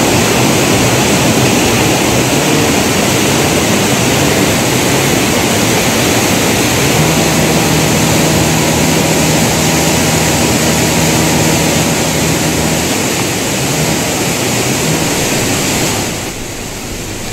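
Floodwater rushing loudly and steadily in a torrent. A faint low hum joins it from about seven seconds in and fades a few seconds later.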